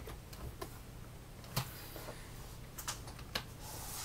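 A few sparse, irregular clicks of computer keyboard keys being pressed over a faint low hum.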